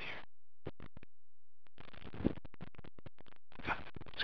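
A man's voice talking to the camera in short, choppy fragments that cut in and out, with a pause of about a second and a half near the start.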